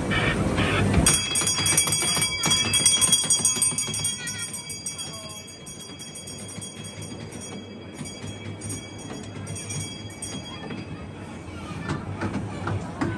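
Bells jingling continuously, with high ringing tones. The jingling is loudest for the first few seconds, then quieter, over general crowd noise.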